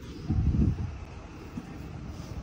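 Wind buffeting a phone's microphone: low rumbling gusts, the strongest about half a second in.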